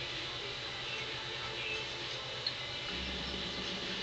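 Stepper motors of a homemade Arduino wall plotter running as they move the pen carriage: a faint steady whir with thin whining tones, and a low hum that drops out at the start and comes back about three seconds in.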